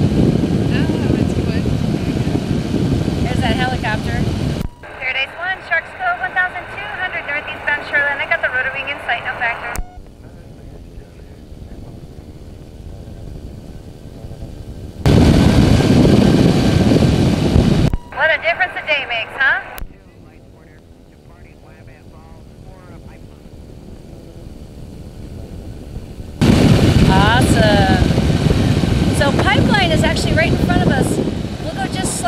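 Microlight trike's engine and pusher propeller running steadily in flight, with wind rush, loud in stretches that cut in and out abruptly. Quieter passages in between hold a faint wavering voice-like sound.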